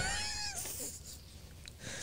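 A woman's high-pitched, squeaky laugh that trails off within the first half second, then quiet room tone.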